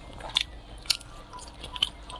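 Close-miked eating: a woman biting and chewing a chewy piece of braised food in sauce, with three sharp, wet mouth clicks.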